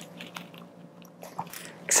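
Faint handling sounds of suturing: a few small clicks and a light rustle as a needle holder draws a suture needle and thread through a cloth uterus model.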